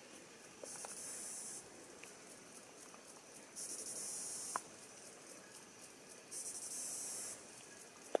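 An insect calling in three high buzzing bursts, each about a second long and roughly two and a half seconds apart, with a light click just after the middle.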